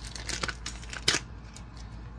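Plastic packet of facial wipes crinkling and rustling as it is handled, with irregular clicks and one louder rustle about a second in.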